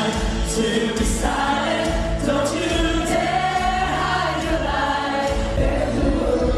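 A Christian worship song with several voices singing together over band accompaniment, with sustained bass notes under the voices.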